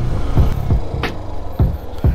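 Yamaha SZ motorcycle's single-cylinder engine running at low speed, with road noise and a sharp click about a second in. The rider hears nothing wrong with the engine.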